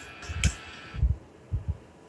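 Looping DVD menu music that cuts off about a second in, just after a sharp click, as the menu selection is made. Low, dull thumps close to the microphone come at uneven intervals throughout and are the loudest sound.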